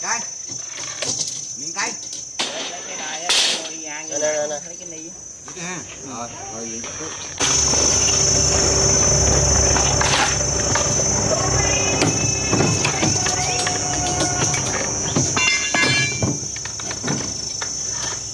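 Steady high-pitched chorus of insects over indistinct voices and a few sharp knocks from steel rebar being bent and tied. About seven seconds in the background abruptly turns louder, with a low steady hum.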